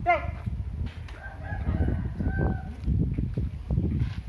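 Wind buffeting the microphone in uneven low rumbling gusts. A shouted command breaks off, falling in pitch, right at the start.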